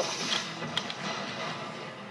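Plastic Lego pieces of the Secret Mountain Shrine set clicking and rattling as the model is handled and opened up, with a few faint sharp clicks in the first second.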